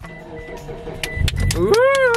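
A Mitsubishi car's engine being started: low rumble building about a second in as it cranks and catches, settling into a steady idle hum. A man's "Woo!" comes over the end.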